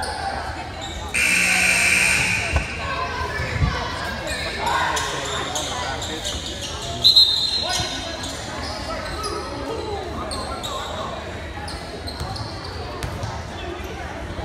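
Basketballs bouncing on a hardwood gym floor amid voices echoing through the hall, with a louder burst of voices about a second in. A short, sharp high-pitched sound cuts through about halfway through.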